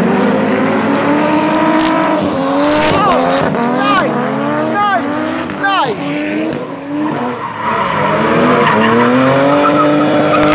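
Drift cars sliding with their engines revving hard, the pitch repeatedly climbing and dropping, over squealing tyres. Several short, sharp rises in pitch come one after another in the middle.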